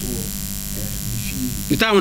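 Steady electrical buzz from mains hum in the recording, heard through a pause in talk; a man's voice comes in loudly near the end.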